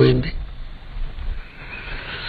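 A man's voice drawing out the last syllable of a word, fading within the first half second, then a pause with only faint low background hum.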